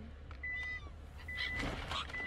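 Silver gulls giving faint mewing calls outside a car window, over a car's warning chime beeping at one steady pitch a little under once a second.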